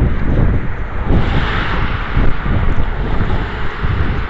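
Wind buffeting the microphone of a body-worn camera, a heavy steady rumble. From about a second in, tyre hiss from traffic on the wet road swells up beneath it.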